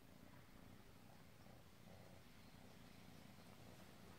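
Near silence: faint room tone with a low, steady rumble underneath.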